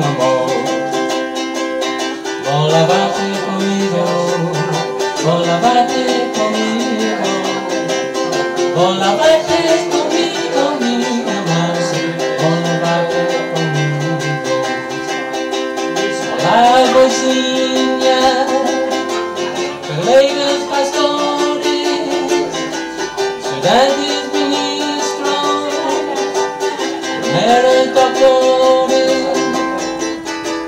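A man singing a song with a strummed ukulele accompaniment.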